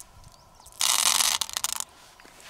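A handful of small hard beads poured out of a hand and clattering together, a dense rattle about a second in that breaks into a few scattered clicks as they settle.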